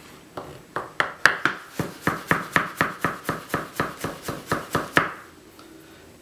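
Chef's knife slicing garlic cloves into thin matchsticks on a white plastic cutting board: a steady run of chopping strokes, about four a second, that stops about a second before the end.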